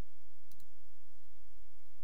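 A single faint computer-mouse click about half a second in, over a steady low background hum.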